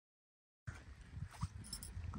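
Silence, then faint outdoor ambience that starts abruptly about half a second in: a low, uneven rumble with a few faint short high sounds.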